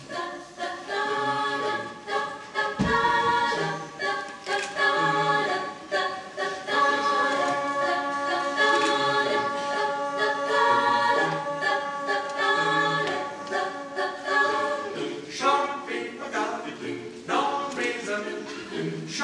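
Mixed chamber choir of men and women singing a cappella in chordal harmony, with a single low thump about three seconds in.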